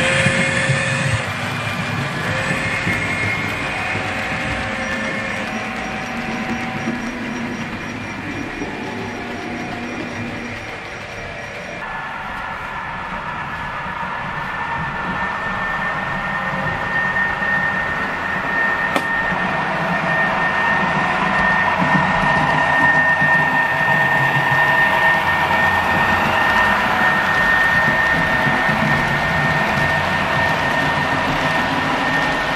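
Model trains running on layout track. In the first part a passing train rolls by. After an abrupt change about twelve seconds in, a second model train, a Roadrailer of truck trailers, approaches and grows louder, with a steady high tone over the rolling of its wheels.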